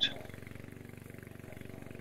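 Small petrol engine of a remote-control tracked lawn mower running steadily under load as it cuts long grass, with a fast, even firing pulse.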